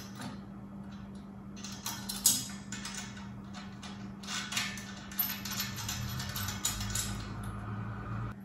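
Steel parts of a log skidding arch being fitted and bolted by hand: metal clinks, rattles and clicks of hardware and tools, with one sharp clank about two seconds in and a run of quick rattling clicks through the second half. A steady low hum sits underneath.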